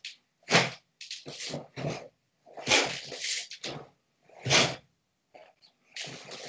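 A karateka performing techniques of the Goju-ryu kata Seipai: a run of about six short, sharp bursts of forceful exhalation and snapping gi cloth, several coming close together early on and a last one near the end.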